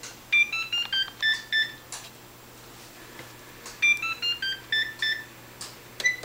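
An electronic beeping tune: a quick run of about eight clear notes, played twice about three and a half seconds apart, with a third run just starting at the end, over quiet room tone.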